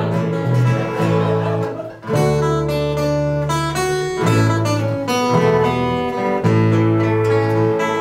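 Acoustic guitars strumming and picking an instrumental passage of a Czech tramp-folk song, with no singing. The playing dips briefly about two seconds in, then comes back in full.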